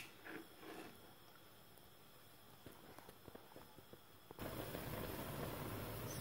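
Near-quiet room tone with a few faint ticks. About four seconds in it gives way to a pot of frozen spinach boiling steadily in the water it has released, with no water added.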